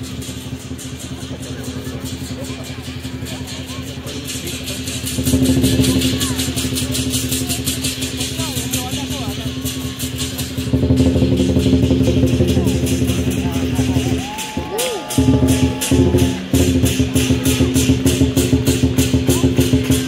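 Dragon dance percussion: fast, steady drum and cymbal beats, getting louder about five seconds in and again near the middle.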